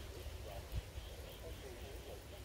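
Faint distant voices over an uneven low rumble of wind or handling on the microphone.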